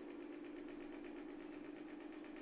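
Faint steady low hum in the background, with no distinct clicks or knocks.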